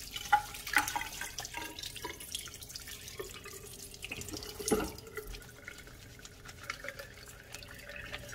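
Tap water running into a washbasin while hands are rubbed and rinsed under the stream, with several sharper splashes along the way.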